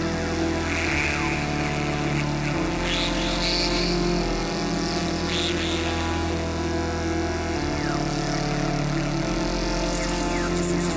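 Eurorack modular synthesizer patch, with Erica Synths Fusion VCO voices, playing sustained low sequenced notes that step to a new pitch every two seconds or so. A hazy, shifting high texture runs over the notes.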